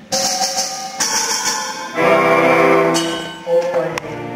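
Live orchestra accompanying a stage musical, with brass and held notes; a loud sustained chord comes in about halfway through and fades out.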